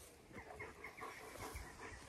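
Quiet outdoor ambience with faint, short bird calls repeating every fraction of a second.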